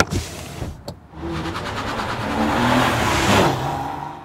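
Sound effect for an animated logo: a sharp hit, then a swelling whoosh with a low motor-like drone that peaks about three and a half seconds in and starts to fade.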